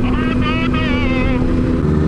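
Motorcycle engine running at a steady cruising speed, heard from the rider's own bike.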